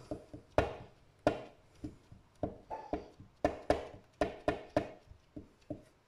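Clear stamp block with an inked rubber flower stamp tapped down repeatedly on paper over a cutting mat: about a dozen light knocks at an irregular pace, roughly two a second, as the stamp is lifted and pressed again and again around the first print.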